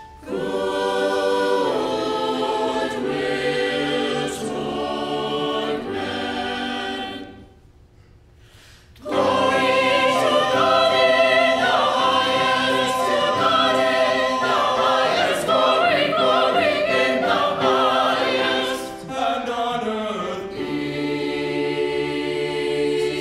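Small mixed church choir singing in parts. About seven seconds in, the voices stop together for a rest of about a second and a half, then come back in louder and fuller.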